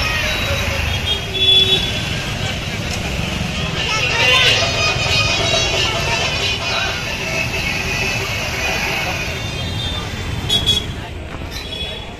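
Busy street noise: a babble of voices over traffic, with vehicle horns tooting.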